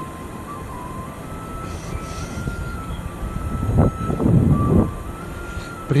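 Wind rumbling on the microphone of a camera being carried outdoors, swelling to a stronger gust about four seconds in.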